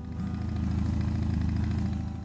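Motorcycle engine idling with a fast, even pulsing, cutting in suddenly and fading out near the end.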